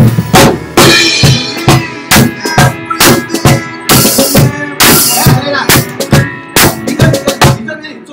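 Drum kit played with sticks along with backing music: a kick-and-snare groove with crash cymbal hits, closing in a quick fill of rapid strokes around the toms, then stopping just before the end.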